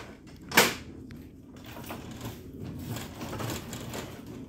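A plastic printer paper tray set down with a single sharp clunk on top of an HP M607 laser printer about half a second in, followed by quieter low rubbing and handling noise as the printer is turned round on its stand.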